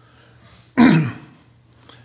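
A man clears his throat once, about three-quarters of a second in, in a short harsh burst that fades quickly.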